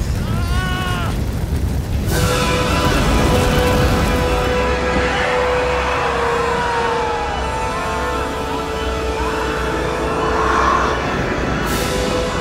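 Ominous orchestral film score with long held notes over a deep, constant rumble. A brief wavering high cry sounds in the first second.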